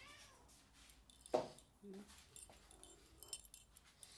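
Domestic cats meowing for food: a short meow at the start, then a louder meow that falls in pitch about a second and a half in, and a brief one after it. Light clicks and rustles follow near the end.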